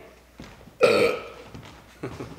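A person's single short, loud throaty vocal sound a little under a second in, without words.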